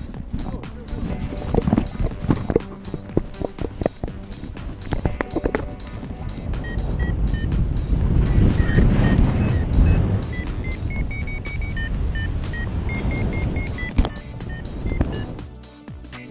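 Wind rushing over the microphone of a paraglider pilot being tow-launched, swelling to its loudest around the middle. Through the second half a variometer beeps in short high tones that step up in pitch as the glider climbs. A run of thumps comes in the first few seconds.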